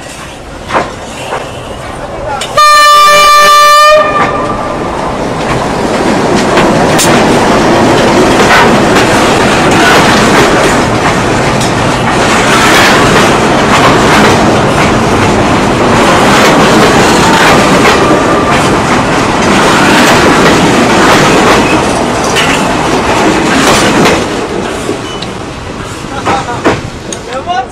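Freight train's locomotive horn sounding one long blast, the loudest sound, a few seconds in. Then the train passes at close range for about twenty seconds, its wagons' wheels running over the rails, the noise fading near the end.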